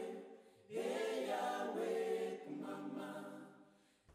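Choral singing in held notes, with a brief break about half a second in, fading out near the end.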